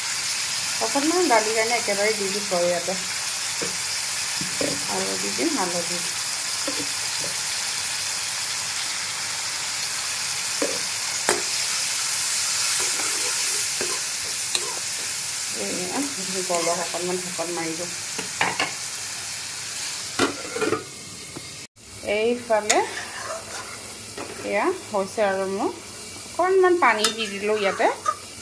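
Chopped tomatoes frying in oil in an iron kadhai, giving a steady sizzle while a steel ladle stirs them. About two-thirds of the way through the sizzle cuts off abruptly and a quieter stirring of thick gravy follows.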